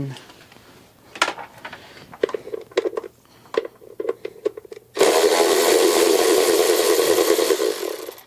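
Light clicks and knocks of a socket being fitted onto a bolt, then, about five seconds in, a cordless electric ratchet with a 10 mm flexible socket starts and runs steadily for nearly three seconds, spinning out a timing belt cover bolt.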